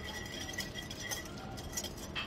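Faint clinks of glass while liquid is poured from a small cup into a glass mixing bowl, with a faint steady high ringing tone underneath.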